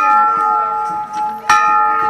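A metal bell struck at an even pace, about every second and a half. One stroke lands at the start and another about a second and a half in, and each rings on with several clear tones. Voices murmur faintly underneath.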